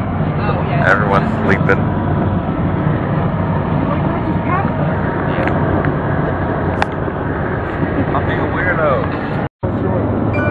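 Steady road and engine noise inside a vehicle moving along a highway, with passengers' voices heard now and then. The sound cuts out for a moment near the end.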